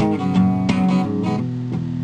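Acoustic guitar strummed, a few strokes with the chords ringing on between them.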